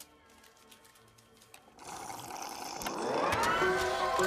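A carnival shooting game powering up: quiet with a few faint clicks at first, then a rising electronic whir from about two seconds in that climbs in pitch and settles into a steady electronic jingle near the end.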